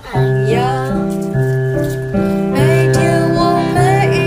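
A song: a voice singing a simple melody over piano chords, with a brief drop in level at the very start.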